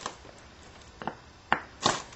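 A few light, sharp clicks as an antler punch is set and pressed against the base of a stone point, before the strike.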